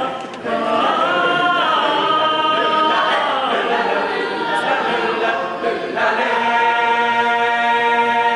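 Boys' choir singing a cappella in harmony, the voice parts moving; about six seconds in they settle onto a long held chord.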